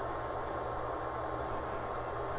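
Cooling fan of a homemade bench power supply running steadily: a low hum under an even whoosh.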